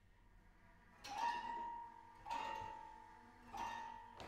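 Contemporary chamber music from a mixed ensemble of East Asian and Western instruments: after a quiet first second, three accented notes about a second and a bit apart, each starting sharply, sliding up into the same pitch and then fading.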